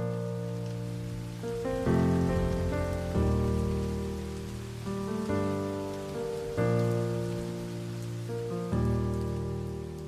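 Piano playing slow, sustained chords, a new chord struck every one to two seconds and left to ring, over a faint steady hiss.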